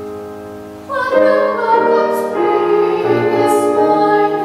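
Classical art song: grand piano accompaniment, with a woman's trained, operatic singing voice entering about a second in and carrying on over the piano.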